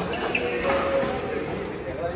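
Badminton doubles rally in a large echoing hall: rackets hitting the shuttlecock and players' footwork on the court mat, a few short sharp hits, with voices in the background.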